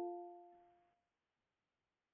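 The fading ring of a video-meeting app's notification chime, its few clear tones dying away within about the first second, then near silence. The chime is the alert that someone is waiting to be admitted to the meeting.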